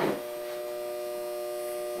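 Steady electrical hum from a Schumacher 6/12-volt battery charger, its transformer under load while it supplies about five to six amps to a hydrogen (HHO) electrolysis cell. A short knock sounds at the very start.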